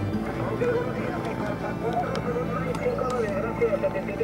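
A distant station's voice heard through an amateur radio transceiver's speaker, thin and narrow-sounding, over a steady low hum.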